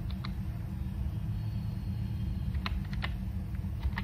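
Laptop keyboard keystrokes, a few separate key clicks as a word is typed: two near the start, a pause, then three more toward the end. A steady low hum runs underneath.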